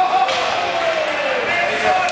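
Ice hockey rink sound: spectators' voices carrying through the arena, with a couple of sharp knocks of puck and sticks on the ice and boards.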